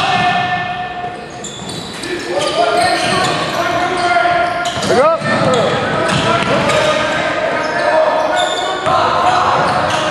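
Basketball dribbling on a hardwood gym floor, with sneakers squeaking, including a sharp squeak about five seconds in. Players' and onlookers' voices echo in the large hall.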